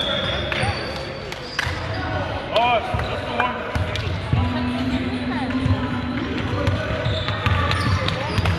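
Basketball bouncing on a hardwood gym floor during play, with short sneaker squeaks and background voices in the large hall.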